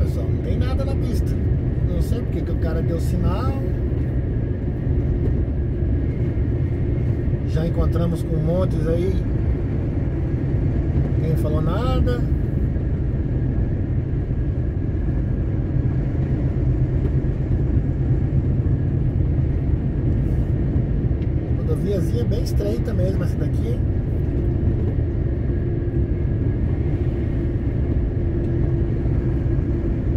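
Truck cab at road speed: a steady low rumble of engine and road noise. Short stretches of an indistinct voice come and go over it.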